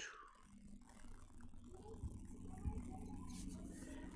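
Quiet room tone with a faint steady low hum and a faint knock a little past halfway through.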